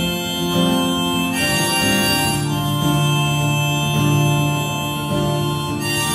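Live solo performance at a keyboard, an instrumental passage without singing: long sustained chords, with a new held chord coming in about a second and a half in.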